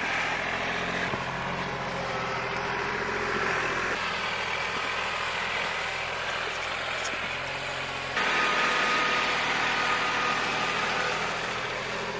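Diesel engine of a compact tractor with loader and backhoe, running steadily. The sound changes abruptly a few times and gets louder about eight seconds in.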